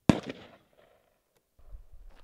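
A single rifle shot from an AR-15-type carbine: one sharp crack just after the start that dies away within about half a second. A low rumble comes in near the end.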